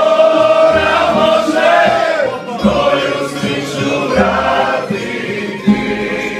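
A group of voices singing a song together in chorus. Near the end, a plucked-string accompaniment comes in with regular strums.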